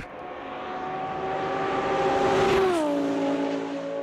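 A car engine passing by: a steady engine note grows louder, drops in pitch as it goes past a little over halfway through, then fades.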